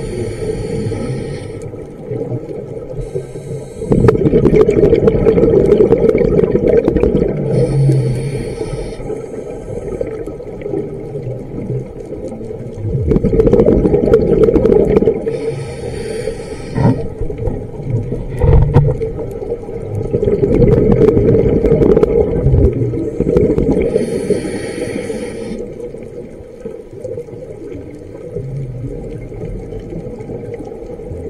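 Scuba diver breathing through a regulator underwater. Short hissing inhales alternate with several seconds of loud bubbling exhaust, repeating a few times, and the sound is quieter near the end.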